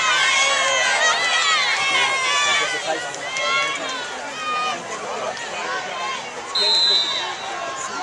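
Spectators yelling and cheering at a football game, many voices overlapping and loudest at the start. About two-thirds of the way in, a single short, steady, shrill whistle blast sounds, like a referee's whistle.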